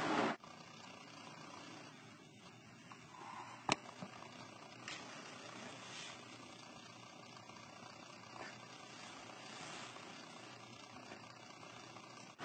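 Quiet room tone with a single sharp click a little under four seconds in, followed by a few fainter ticks.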